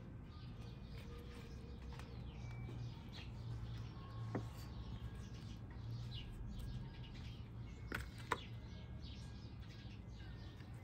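Small birds chirping over and over in short high notes, above a low steady hum, with a few light clicks about four seconds in and twice near eight seconds.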